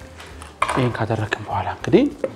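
Metal kitchenware clinking a few times as a stainless-steel blender jug is handled on the counter, with a man talking over it from about half a second in.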